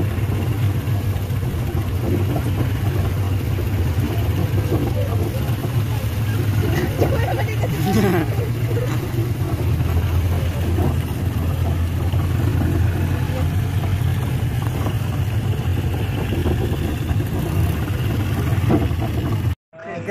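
A vehicle engine running steadily with a low drone while on the move. Brief voices come through about seven to nine seconds in, and the sound cuts off just before the end.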